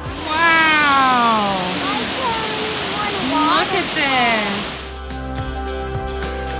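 Steady roar of a waterfall running full after heavy rain, with a voice shouting several long sliding calls over it, mostly falling in pitch. Background music comes back in near the end.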